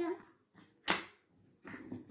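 A young child's high voice tailing off, then one sharp tap about a second in as a piece or hand strikes the wooden puzzle board.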